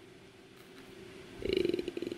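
A near-quiet pause, then about a second and a half in a woman's brief low, buzzing hesitation sound, a vocal-fry 'uhh' made of rapid pulses, leading into her next word.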